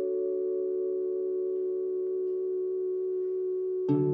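Background music: a soft chord held steadily, with a new chord and plucked notes coming in near the end.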